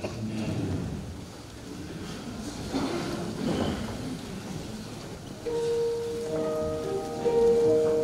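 A few seconds of hall noise with a brief noisy rustle, then an electronic keyboard begins playing held notes about five and a half seconds in.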